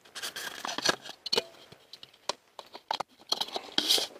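A camera shutter clicking several times at irregular intervals, with rustling handling noise that thickens near the end.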